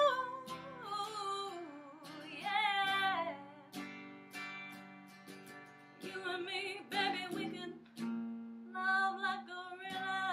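A woman singing wavering vocal phrases, with no words picked up, over her own electric guitar chords. The phrases come in short bursts with quieter gaps of guitar between them.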